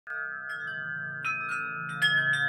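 Litu 41-inch wind chimes with thick-walled aluminum tubes ringing, the tubes struck several times so each new note rings on over the last in a long, overlapping shimmer.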